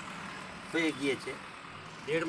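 A man's voice speaking briefly about a second in, over steady background noise.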